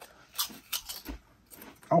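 Two people biting into and chewing Utz potato chips. A few sharp crunches come in the first second, followed by quieter chewing.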